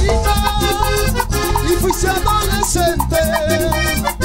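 Live guaracha band music: a fast, steady dance beat under keyboard-style melody lines, in the middle of a guaracha medley.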